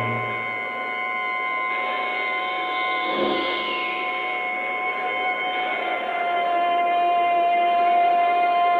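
Live rock band in a slow drone passage, several steady tones held without a beat. There is a brief swell about three seconds in, and a low hum dies away within the first second.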